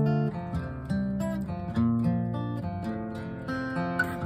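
Steel-string acoustic guitar, tuned down a whole step, playing chord shapes in a picking pattern, with a new note or chord plucked about every half second.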